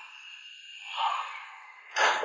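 A soft sigh: one breath out that swells and fades about a second in, over quiet room tone.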